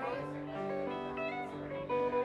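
Live band guitars, acoustic and electric, sounding held notes and chords that ring for about a second each, with voices in the room behind them.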